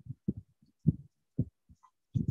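A run of short, soft low thumps at irregular intervals, a few a second, the strongest about a second in.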